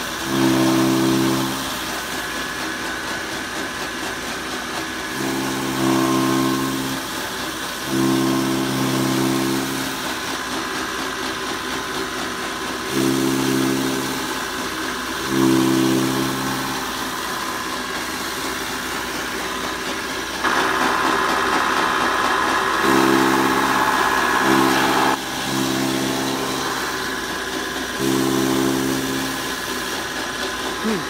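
A 9ZT-0.4 straw and grass chopper, driven by a 3 kW single-phase electric motor, runs steadily with a rushing, whirring noise. About nine times a low, steady hum swells for a second or two as bundles of straw are fed in and chopped. A louder rushing sound lasts about five seconds past the middle.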